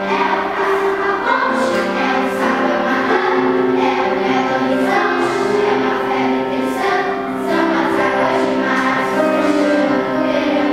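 Children's choir singing together in sustained, changing notes, accompanied by piano.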